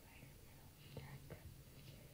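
Near silence: faint whispering, with a couple of soft clicks about a second in.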